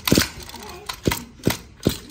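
Recoil pull-starter of a small brush-cutter petrol engine being pulled to test compression, making four sharp clacks over about two seconds; the compression turns out fairly good.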